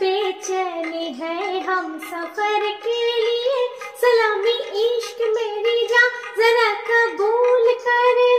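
A woman singing a film-ghazal melody in Indian light-classical style, her voice turning through quick ornamented runs over a karaoke backing track.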